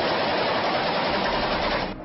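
A loud, dense, steady rush of noise with no voices, cutting off suddenly near the end.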